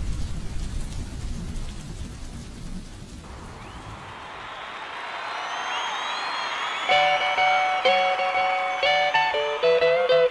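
Music: a low rumbling drone fades out, a shimmering swell rises through the middle, and then a melody of held notes begins about seven seconds in.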